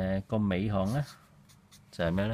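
A voice speaking for about the first second, then a marker pen scratching faintly on paper in short strokes.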